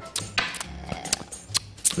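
A few sharp clicks and taps scattered through a pause, over a faint low hum.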